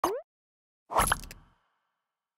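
Sound effects for an animated logo: a short pop that rises in pitch at the start, then about a second in a second short hit with a deep low end that fades out over about half a second.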